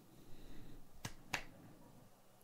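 Two faint, sharp clicks about a third of a second apart, after a soft rustle.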